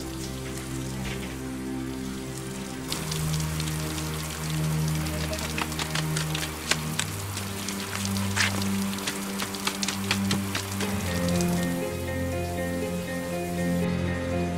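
Heavy rain falling over slow background music with long held chords. The rain comes in about three seconds in as a dense hiss full of separate drop hits, and it fades out around eleven seconds, leaving the music alone.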